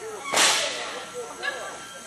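A single sharp crack or slap about a third of a second in, with a short echo in a large hall, over faint background voices.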